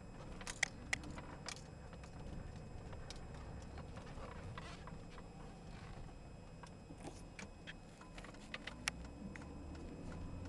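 Low, steady engine and road rumble heard inside the cab of a 2004 Chevrolet Silverado with a 5.3-litre V8 while driving, with scattered light, sharp clicks and jingles, most in the first two seconds and a few near the end.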